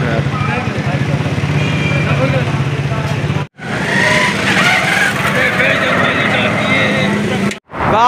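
A vehicle engine running steadily amid street noise, with voices talking in the background. The sound drops out briefly twice, once about three and a half seconds in and once near the end.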